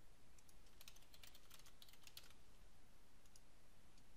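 Faint computer-keyboard typing as a password is keyed in: a quick run of keystrokes starting about a second in and lasting about a second and a half, with a few single key clicks before and after it.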